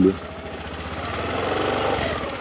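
Small scooter engine speeding up as the rider opens the throttle to pull away, its running sound growing louder toward the end.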